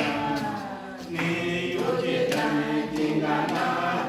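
A small congregation singing a Christian song of hope together, unaccompanied, in sustained phrases with a short breath between lines just before a second in.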